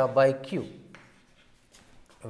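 A man's voice saying "by q", followed by faint scratching and tapping of chalk writing on a blackboard.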